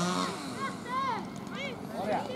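Voices shouting in short calls that rise and fall in pitch, a few of them overlapping, over steady outdoor background noise.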